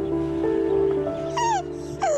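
Soft background music with long held notes; about one and a half seconds in, a woman's high, falling wail as she sobs in despair.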